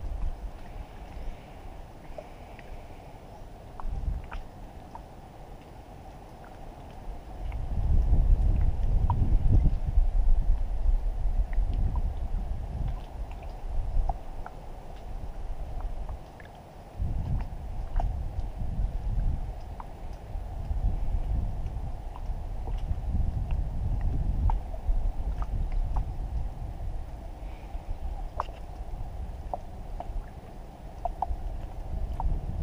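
Small wooden canoe moving on open water: water washing along the hull with scattered light knocks, and gusts of wind rumbling on the microphone, heaviest about eight to eleven seconds in and again through the second half.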